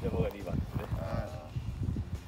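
Quiet men's voices: a few murmured sounds and one drawn-out vocal sound held at a steady pitch, like a hummed 'mmm'.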